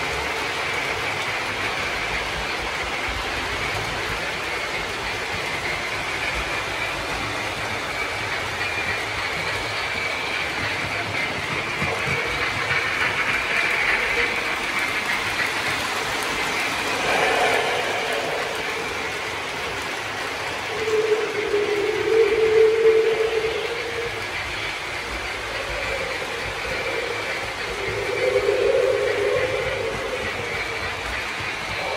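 Lionel O scale model trains, the Hogwarts Express and a 0-6-0 steam switcher, running on three-rail track with a steady rolling, clicking running noise. The sound swells louder about halfway through, again around two-thirds of the way, and near the end.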